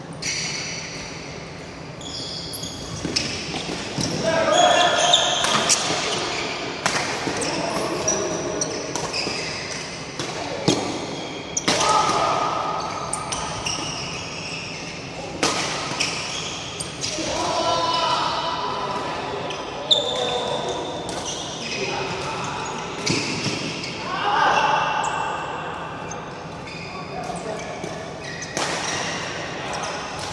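Badminton doubles play in an echoing sports hall: repeated sharp racket strikes on the shuttlecock at irregular intervals through rallies, with players' voices in between.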